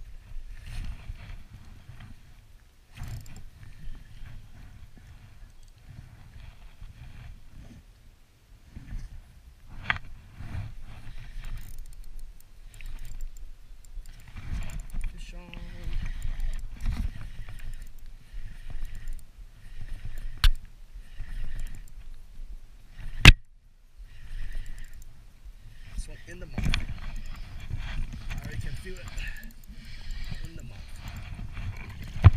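Uneven low rumble of wind and handling noise on a body-worn camera microphone, with a sharp click a little past the middle and a louder sharp knock a few seconds later.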